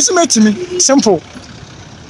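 A man talking for about the first second, then a low steady background of street traffic.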